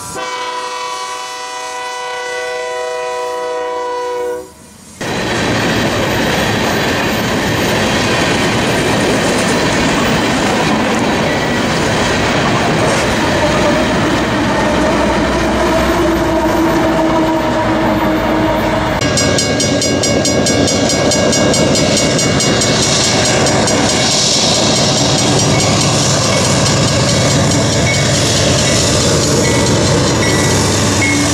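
The last bars of background music, then from about five seconds in diesel freight locomotives and their trains passing close by, with loud steady rolling noise of wheels on rail. The sound changes abruptly about two-thirds of the way through, as another train takes over.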